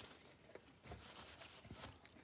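Near silence, with faint mouth noises from chewing a bite of grilled burger: a few soft scattered clicks.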